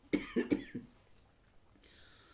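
A woman coughing: four short coughs in quick succession in the first second.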